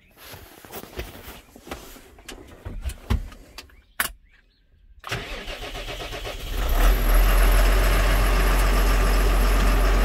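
Scattered knocks and clicks in the New Holland T7's cab, with one sharp clack about four seconds in. About a second later the tractor's diesel engine cranks and catches, building up and settling into a steady idle with a deep rumble, started to warm up before work.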